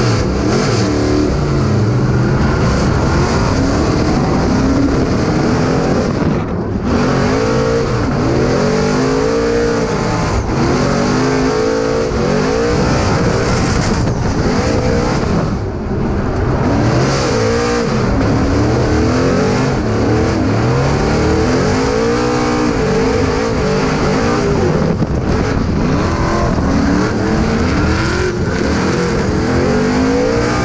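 Formula Drift Mustang RTR's V8 engine heard from inside the cabin during a drift run, revving up and down over and over in quick sweeps. The revs dip briefly about six and fifteen seconds in.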